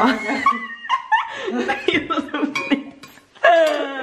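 Women laughing and talking, with a loud burst of laughter near the end.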